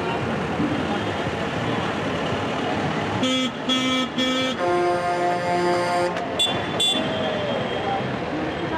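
Vehicle horn honking: three quick short toots, then a longer blast at a different pitch, then two more short toots, over the steady noise of passing engines.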